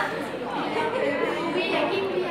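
Several people chattering at once, their voices overlapping in a reverberant room.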